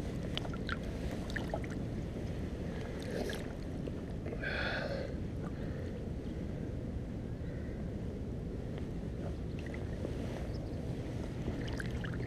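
Shallow river water moving and lapping around a wading angler's legs and submerged hands, a steady low rush with a brief louder swirl about four and a half seconds in.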